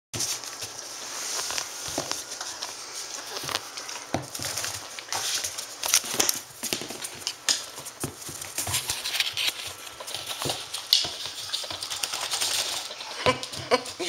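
Standard poodles moving about on a tile floor, their claws clicking and pattering irregularly, mixed with scattered knocks and rustling.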